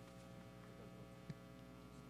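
Near silence: a faint, steady electrical mains hum from a live microphone and sound system, with one faint click a little over a second in.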